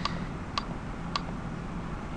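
Computer mouse clicking three times, about half a second apart, as the frame-step button of a video player is pressed.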